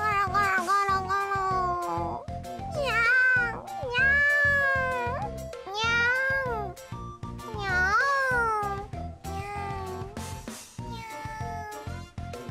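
Young female anime-style voices giving about six drawn-out, sing-song 'nyaa' cat meows, each sliding up and down in pitch, over light background music.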